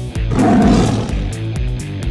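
A tiger roar sound effect, one rough roar lasting about a second that starts a moment in, over background music with a steady beat.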